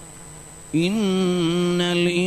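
A man's voice chanting: after a short pause it comes in about a second in with one long held note, swelling slightly at first and then sustained.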